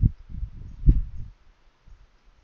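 Two soft, low thumps about a second apart, the second the louder.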